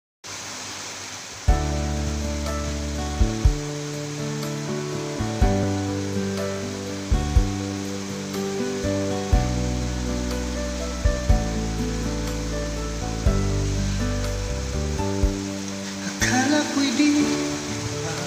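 Instrumental karaoke backing track playing its intro: held chords over a strong bass line, with sharp accented hits, coming in about a second and a half in. A steady hiss runs underneath, and the music turns brighter and busier near the end.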